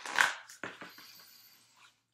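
A deck of animal spirit oracle cards shuffled by hand: a loud rustling burst right at the start, then a few soft card clicks that fade away.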